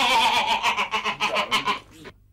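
A woman laughing loudly in a rapid, stuttering run of pitched bursts, which stops just before the end.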